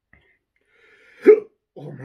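A single sharp hiccup from a man about a second in, brought on by downing a very hot chilli drink; he starts speaking just after it.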